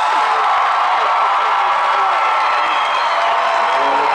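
Stadium crowd cheering, whooping and applauding for a marching band at the end of its show, with a few whistles rising and falling over the steady cheer.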